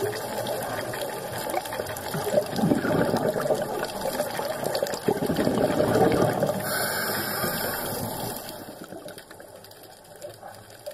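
Underwater recording of a scuba diver's exhaled bubbles gurgling and rushing past the camera, louder through the middle and fading near the end.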